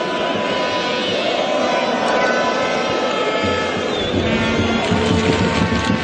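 Steady din of a football stadium crowd heard through a TV broadcast, with several sustained steady tones over it.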